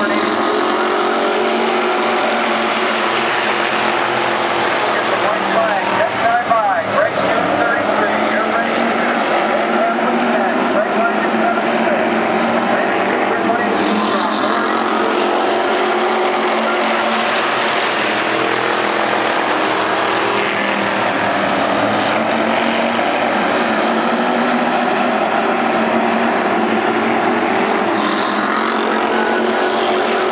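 A pack of street stock race cars running hard around a paved oval, their engines a loud, steady, layered drone, with a wavering rise and fall in pitch about six to seven seconds in.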